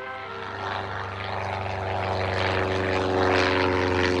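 Small propeller aircraft's piston engine running at a steady pitch, growing louder over the first few seconds and then holding level.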